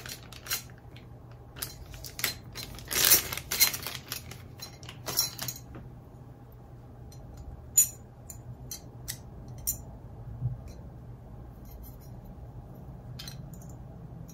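Light clicks, taps and rustles of a guitar pickup and its plastic cover being handled and fitted, with a busier patch of handling noise about three seconds in. A faint steady low hum runs underneath.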